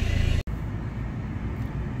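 Fiat Toro pickup's engine idling, a steady low rumble heard from inside the cabin. It cuts off abruptly about half a second in, then carries on more quietly.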